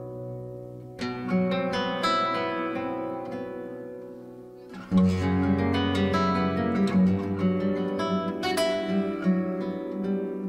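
Flamenco-style acoustic guitar music: chords struck about a second in and again a second later, left to ring and fade. About five seconds in, the music turns suddenly louder and fuller, with a low bass line under quicker picked notes.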